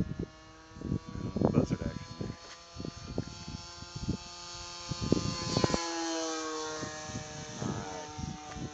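Electric RC model warbird passing overhead, its motor and propeller giving a steady whine whose pitch drops about five to six seconds in as the plane flies by.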